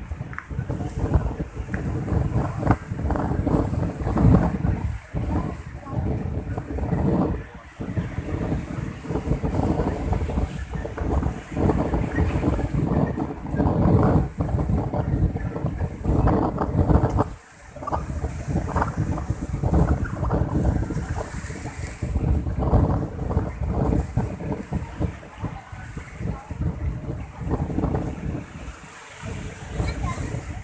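Wind buffeting the microphone in loud, irregular gusts, with a crowd of people talking underneath.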